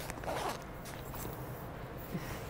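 A short rustle of clothing, like a zipper or pocket being handled, about half a second in, over steady outdoor background noise.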